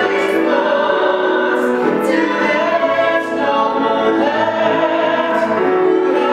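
A man's and a woman's voices singing a musical-theatre duet over grand piano accompaniment.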